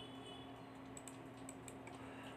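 Faint clicking at a computer, a handful of light taps in the second half, over a steady low hum.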